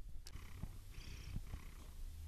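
A sleeping tabby cat purring, the quietest of purring: a faint, steady low rumble.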